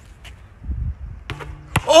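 A basketball striking an outdoor backboard on a bank shot: a sharp knock near the end, with a duller thud and a click before it.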